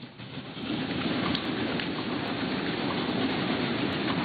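Audience applauding, swelling over the first second and then steady.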